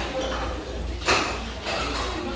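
A person slurping noodles of jjamppong (Korean spicy seafood noodle soup) up from chopsticks: a short slurp at the start and a louder one about a second in.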